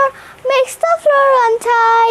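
A young girl singing a nursery rhyme without accompaniment, in short held notes on a steady, simple tune, with a brief break about half a second in.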